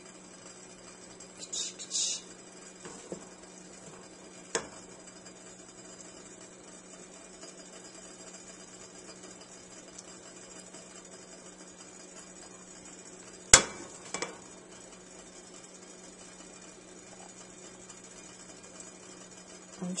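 A wooden spoon and a chocolate-coated frozen banana scraping and knocking against a stainless steel double-boiler bowl as the banana is swirled through melted chocolate. There are a few scattered scrapes and clicks, with one sharp clack about two-thirds of the way through, over a steady low hum.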